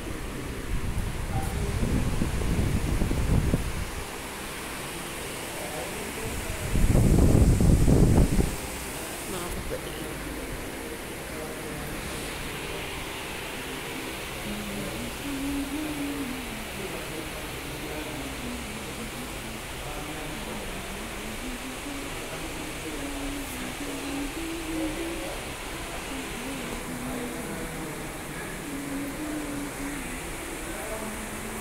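Devotional singing in the background: one slow melodic line that wavers up and down. There are two low rumbles in the first seconds, the louder one about seven to eight seconds in.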